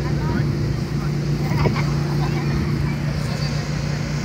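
A steady low motor hum, unchanging in pitch, with the chatter of people talking in the background.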